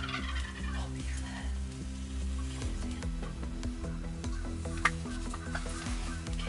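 Wild turkey gobbling, a rapid rattling call falling in pitch, at the start, over background music with a slow bass line. A short sharp click comes about five seconds in.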